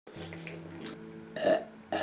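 A person burping after a swig from a drink can: one long, low, steady burp, followed about a second and a half in by a short, louder sound.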